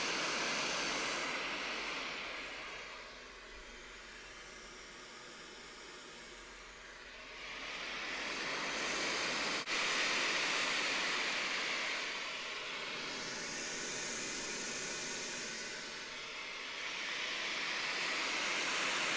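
White noise played from a phone's speaker, picked up by a condenser microphone as the phone is moved around it: the hiss fades for a few seconds, then comes back up. About ten seconds in a click marks a cut to a take with the microphone's isolation chamber removed, where the same hiss swells and dips less.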